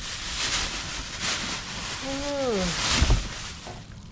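Thin plastic bag crinkling and rustling as gloved hands dig into it and pull out something wrapped inside. A brief vocal sound comes about two seconds in, and a low thump a second later.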